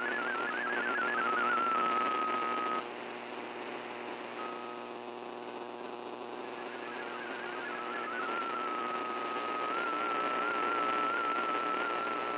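Shortwave radio reception of an MFSK32 digital-mode data signal: a warbling run of data tones over static hiss. About three seconds in, the tones drop out to static, with one brief blip. They fade back toward the end, first as a steady tone and then warbling again. The fading signal in the noise is what makes the decoded data cut out.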